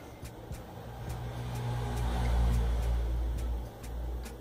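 A low rumble that swells over a couple of seconds and dies away shortly before the end.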